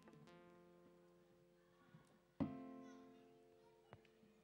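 Acoustic guitar playing softly: a chord rings and fades, then a second chord is struck about two and a half seconds in and rings out, slowly dying away.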